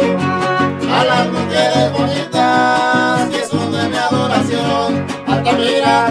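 Live son huasteco string music: a violin plays a sustained melody over steadily strummed guitars, with one long held violin note near the middle.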